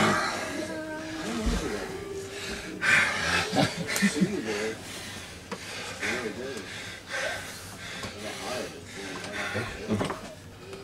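Men grunting and breathing hard as they strain against each other in an arm-wrestling pull, with short wordless bursts of voice scattered through.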